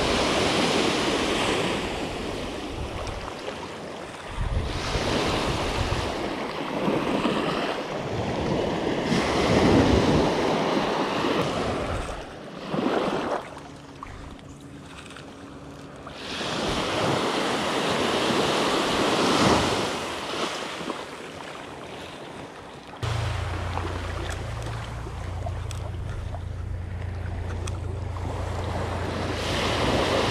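Small surf waves washing up the beach and drawing back, in swells that come every few seconds. About two-thirds of the way through, a steady low rumble of wind on the microphone joins in.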